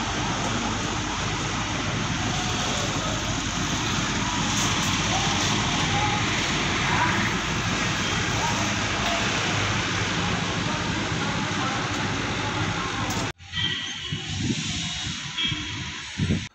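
Steady rushing outdoor roadside noise with faint voices in it. It cuts off suddenly about thirteen seconds in, giving way to a quieter background with a few short tones.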